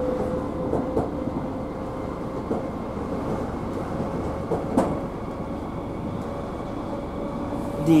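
Cabin sound of a Southern Class 313 electric multiple unit running on the line: a steady rumble of wheels and running gear with a faint steady tone, and a few short knocks from the track, the loudest just before halfway.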